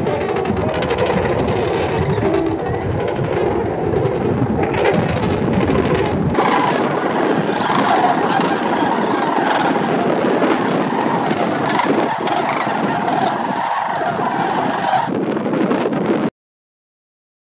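A large mixed flock of sandhill cranes and Canada geese calling all at once as they take off together, a dense din of goose honks and crane calls. About six seconds in, the sound changes abruptly to a brighter, clearer stretch of the same massed calling.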